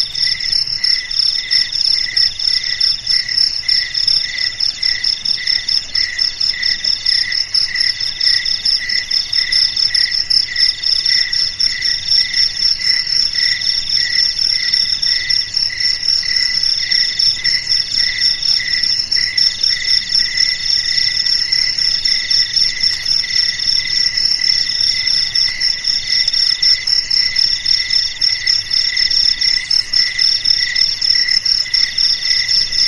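Loud night chorus of insects: several overlapping trills at different pitches pulse on without a break, and one mid-pitched voice repeats in bursts of about a second each.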